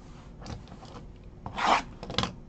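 A cardboard trading-card box being handled and opened on a table: a soft rub about half a second in, then a loud scraping rub near the end.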